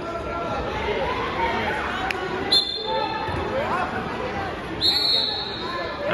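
Wrestling referee's whistle blown twice over the chatter of a gym crowd: a short blast, then a longer one about two seconds later, as the bout starts.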